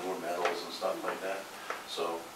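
Low, indistinct speech in a small room, with a short sharp click or knock near the end.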